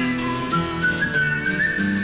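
Live band playing an instrumental break: a high, slightly gliding lead melody over acoustic guitar and bass notes.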